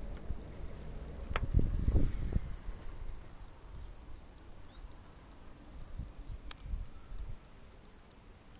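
Low rumbling buffets on the camera's microphone, loudest about a second and a half in and weaker again near the end, with two sharp clicks.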